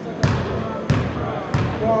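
Basketball bounced three times on a hardwood gym floor, the bounces about two-thirds of a second apart, as a free throw shooter dribbles at the line.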